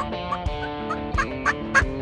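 A series of turkey calls: short rising notes about three a second, getting louder toward the end, over guitar background music.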